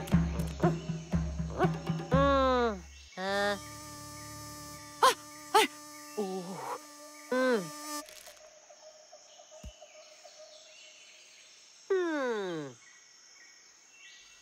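Cartoon bee buzzing in a low hum, with wordless squeaky vocal noises sliding up and down in pitch and a few sharp clicks. The buzz drops out about halfway, and a single falling sweep comes near the end.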